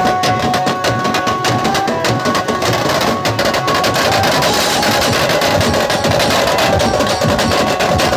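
Loud, drum-led festival music: a fast, dense stream of sharp drum strikes, with a few held melody notes in the first couple of seconds.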